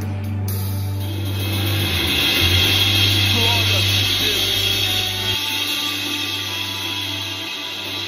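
A live band holds sustained chords while the drum kit's cymbals wash over them, swelling a couple of seconds in and easing off toward the end. The low bass notes drop out about five seconds in.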